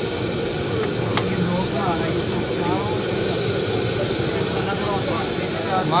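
Faint background voices of several people over a steady, even din, with a couple of small sharp clicks about a second in.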